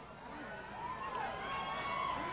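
Concert audience voices, many people chattering and calling out with a few drawn-out shouts, fading in from quiet.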